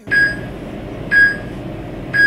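Countdown timer beeping through the last seconds of a rest interval: two short, high beeps about one second apart over a steady background hiss.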